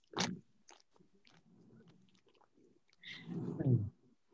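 Faint crinkles and small clicks of a cookie being worked out of its package. Near the end comes a short vocal sound whose pitch falls.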